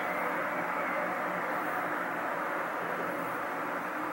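Steady background hum with a few faint steady tones in it, even throughout, with no distinct events.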